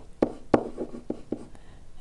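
Pen or stylus writing on a digital writing surface: a handful of light taps and scratches, about three a second, as short strokes are written.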